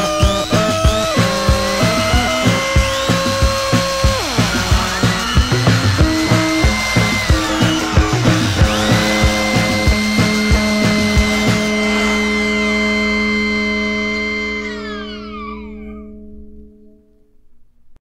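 Minimal electronic new-wave music: steady synthesizer tones over a regular electronic beat. The beat stops about twelve seconds in, leaving a held synth chord whose upper notes slide downward as it fades out.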